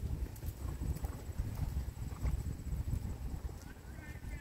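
Hoofbeats of a paint horse moving over a sand arena, heard over a low, uneven rumble.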